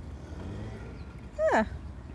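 Steady low rumble of outdoor background noise, with one short, sharply falling voice sound about one and a half seconds in.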